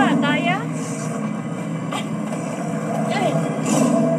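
Horror-movie soundtrack playing in the room: a steady low hum with scattered voice sounds, and a short wavering cry rising in pitch just after the start.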